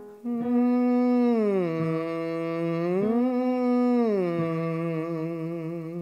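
A man humming on an 'ng' sound with his tongue stuck out, a singing exercise to free the tongue: one held note slides down, back up, and down again, wavering slightly near the end.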